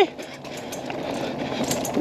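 Mountain bike rolling fast down a dirt trail over a small jump: a steady rush of tyre and wind noise close to the front wheel, with a few faint rattles near the end.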